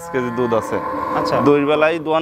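A cow mooing once, from about half a second to a second and a half in, over men's talk.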